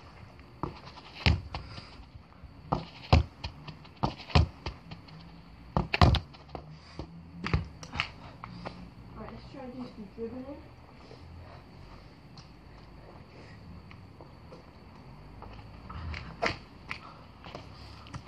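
Irregular sharp knocks and thuds from a football being kicked and metal crutches being planted and clattering, about eight in the first few seconds, then a quieter stretch and a few more near the end.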